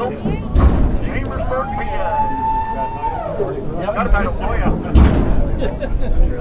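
People talking among a crowd, with two heavy thumps, one about half a second in and one about five seconds in.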